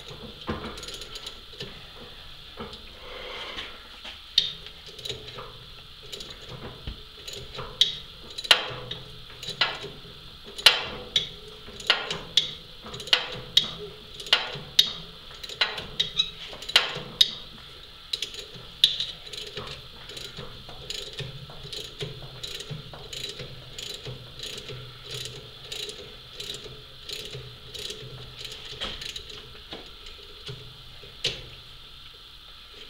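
Hand ratchet clicking in short, irregular runs as it is worked back and forth to turn a tap held in a tap socket, cutting a thread by hand. The clicks are loudest and thickest in the middle and thin out and soften toward the end.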